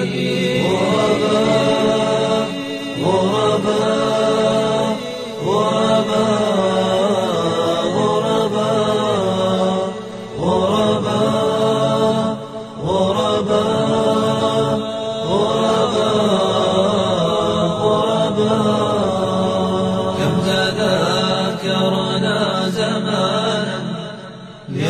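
Arabic nasheed sung a cappella by male voices: a held, chanted melody in long phrases of about two to three seconds each, over a steady low vocal drone, with no words made out.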